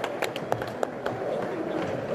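Scattered, irregular handclaps over a low crowd noise from a concert audience, as the cheering dies down.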